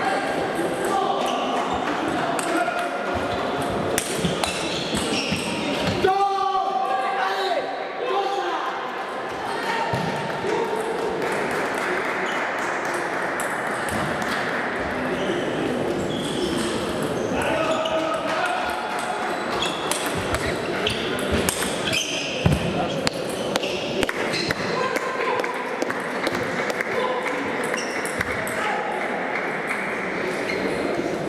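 Table tennis ball clicking back and forth off rackets and the table in repeated rallies, over a steady background chatter of many voices in a large sports hall.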